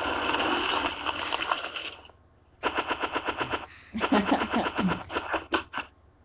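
A dense rush of noise for about two seconds, then two runs of rapid sharp clatter, about nine strikes a second, like machine-gun fire, with a person laughing over the second run.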